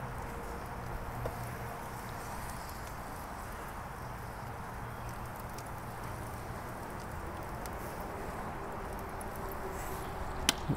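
Steady, fairly quiet background noise with a faint low hum.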